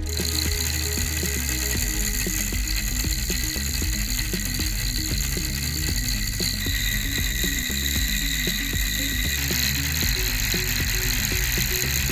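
Homemade cork-rotor DC motor running fast, its bent copper-wire brushes clattering rapidly against the commutator. The sound changes about six and a half and again about nine and a half seconds in.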